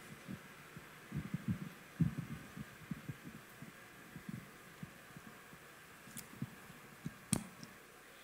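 Handling noise from a handheld microphone being put down: a scatter of dull low thumps over faint room hum, and one sharp click about seven seconds in.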